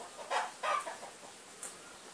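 A chicken clucking: two short calls in quick succession, about a third of a second apart.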